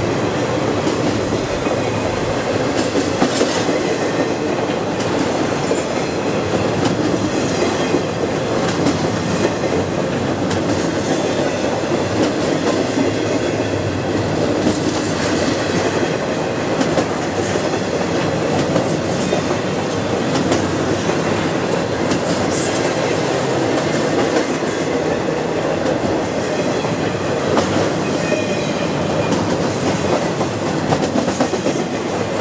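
Freight cars of an intermodal train rolling past close by, some loaded with truck trailers and some empty: a steady, loud rumble of steel wheels on rail, broken by frequent short clicks and clatter as the wheels pass over the rail joints.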